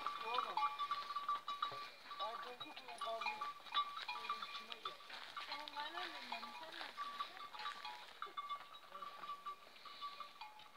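Livestock calling, with people's voices mixed in.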